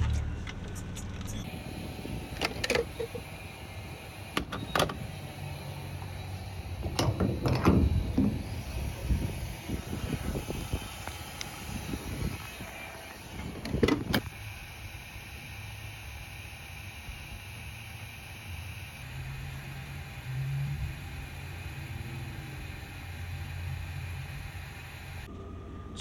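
Refuelling an old full-size Chevy/GMC pickup: several sharp clunks and knocks as the truck and pump are handled, over a steady low hum.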